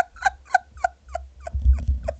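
A woman laughing: a string of short, pitched 'ha' pulses, about four a second, trailing off.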